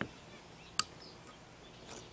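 A single sharp metallic click about a second in, as a steel socket and a shotshell hull are handled on a wooden block, against a quiet background.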